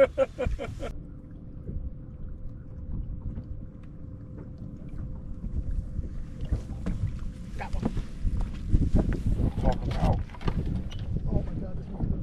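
A man laughs briefly at the start. Wind then rumbles on the microphone aboard a bass boat, with a faint steady hum for the first several seconds. Scattered knocks and handling clatter come in over the second half.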